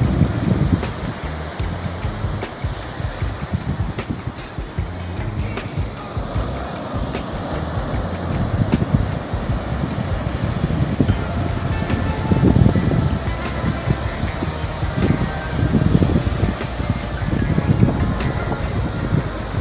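Wind buffeting the microphone in irregular gusts, a low rumbling that swells and drops, with faint music underneath in the second half.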